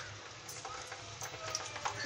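Sabudana-potato chakli deep-frying in hot oil: a steady sizzle with scattered small crackles as the oil bubbles around them.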